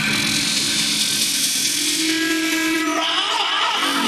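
Breakdown in an electronic dance track: a loud, hissing noise sweep over held synth tones, with no beat. About three seconds in the hiss drops away and a higher held tone takes over.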